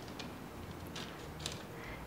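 Quiet handling sounds of soft cookie dough being pinched off a mound on a parchment-paper-lined baking tray, with a few faint light ticks over a low steady hiss.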